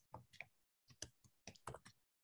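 Near silence broken by a few faint, irregular clicks from a computer mouse.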